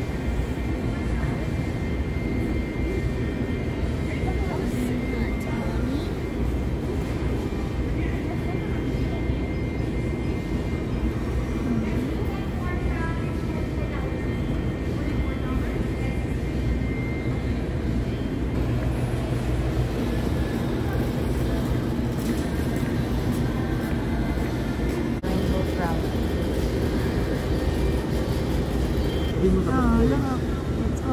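Indoor store ambience: a steady low rumble of machinery with indistinct voices of other people in the background.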